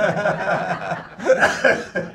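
A man laughing, a run of chuckles, loudest a little past halfway through.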